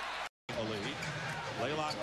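Basketball TV broadcast audio: a man's commentary over the game's arena sound, broken by a brief gap of dead silence at an edit cut about a third of a second in.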